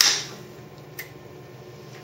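Hand-operated heat sealer's jaw pressed shut on a plastic film bag with a sharp clack, then held under heavy pressure through the sealing cycle, with one faint click about a second in.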